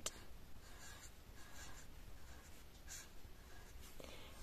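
Faint scratching of a pen on paper, writing in a few short strokes.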